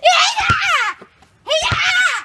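A child screaming: two high-pitched, wavering shrieks, the first about a second long, the second starting after a short silent gap about a second and a half in.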